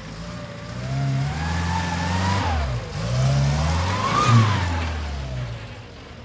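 Steyr-Puch Pinzgauer 710K's air-cooled four-cylinder petrol engine pulling the truck off-road, the revs climbing twice with a dip between. It peaks about four seconds in, then falls away and fades as the truck drives off.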